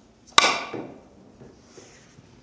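A billiard cue tip striking the cue ball firmly once, about half a second in, for a shot played with added speed. A brief fading tail of the ball rolling across the cloth follows.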